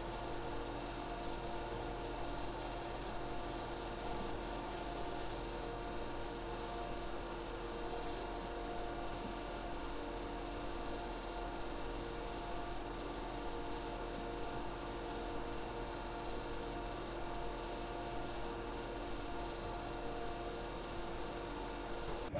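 A rack server and a backup drive running together: a steady hum and fan whir with several held tones over an even hiss. The backup drive's fan has just been replaced with a quieter one, so what remains audible is mostly the server.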